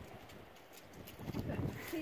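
Soft low thumps and rustling, then near the end a goat starts a long wavering bleat.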